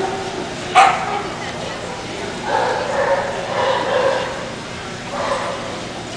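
A dog gives one sharp yip about a second in, the loudest sound here, over people talking in the background.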